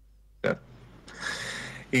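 A man's short vocal "eh?" with a sharp onset about half a second in, followed by a breathy, rising rush of breath into a close microphone.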